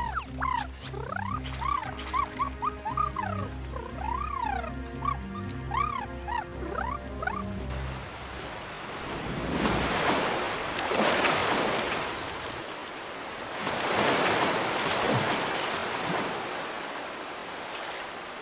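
Cartoon score with a bass line and quick swooping pitch glides, giving way about eight seconds in to a rush of flood water that swells twice.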